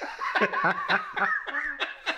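A man laughing in a string of short bursts.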